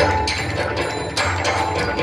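The singing drops out and a steady low hum is heard with fast, irregular clicking over it.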